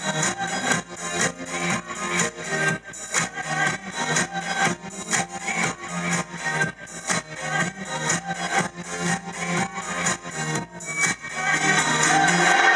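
Live band music: a guitar playing over a steady, quick percussive beat, without singing.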